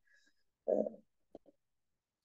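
A pause in speech, mostly silent, with one short, low vocal sound like a hesitant hum about two-thirds of a second in, followed by a faint click.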